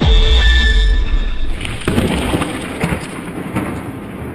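A phone speaker held to a microphone plays a short video's audio: a sudden loud boom with a deep rumble that fades after about a second, with music over it, then a noisier stretch.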